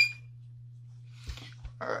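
FLIR CM83 clamp meter giving one short, high beep right at the start as its rotary dial is switched. It is followed by faint handling rustle and a couple of soft knocks about a second and a half in, over a steady low hum.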